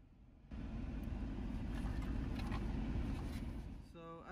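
A steady low rumble of a running vehicle, with a few faint clicks, starting abruptly about half a second in.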